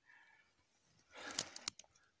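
Quiet, then a short rustle with a few small crackles about a second in, as twigs and dry cedar litter on the forest floor are disturbed.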